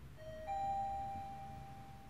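Mitsubishi Electric elevator arrival chime: two electronic notes, a lower one and then a louder higher one, each ringing on and slowly fading. It signals a car arriving at the floor.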